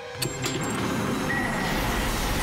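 Cartoon robot's jet boosters firing up: a click, then a steady rushing thrust noise that builds and holds.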